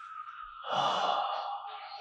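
A person's breathy sigh, lasting about a second, with faint show audio underneath.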